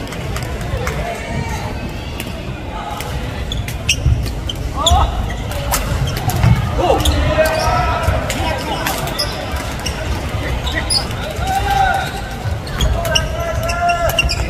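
A doubles badminton rally on an indoor wooden court: repeated sharp clicks of rackets striking the shuttlecock and shoes squeaking as players move, amid the echoing hubbub of a busy gymnasium.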